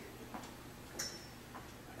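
A pause in a quiet room, with a faint hiss and three faint ticks a little over half a second apart; the middle one carries a brief high ring.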